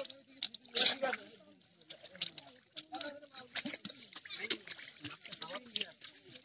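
Several people talking and calling out while hands splash and slap in thick mud and shallow water, with many short wet splashes scattered throughout.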